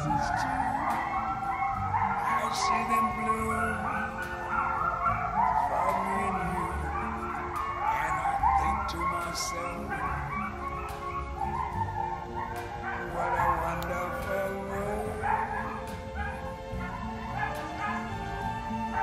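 A pack of coyotes howling and yipping together, many voices sliding up in pitch and wavering over one another.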